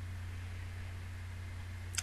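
Room tone: a steady low hum under a faint even hiss.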